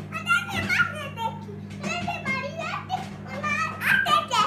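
A young child's high-pitched wordless vocalizing and squeals during play, with pitch sliding up and down from call to call, over a steady low hum.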